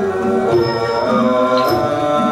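Thai classical ensemble music with ranat xylophones, drums, saw u fiddle, khlui flute and ching cymbals, playing steady held melodic notes, with a high metallic ringing in the middle.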